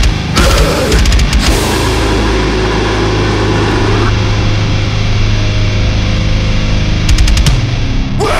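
Deathcore breakdown: heavily distorted, down-tuned guitars with drums. A low chord is held for several seconds in the middle, and the drums and cymbals hit hard again near the end.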